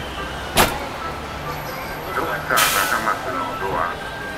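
Street sound beside a parked van: a single sharp knock about half a second in, then people talking, with a brief hissing burst near the end.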